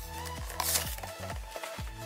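Background electronic music with a steady beat, and a short rustle of cardboard packaging being handled a little past half a second in.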